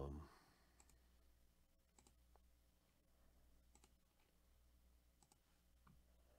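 Near silence with a few faint, scattered computer mouse clicks, about six spread irregularly over the stretch.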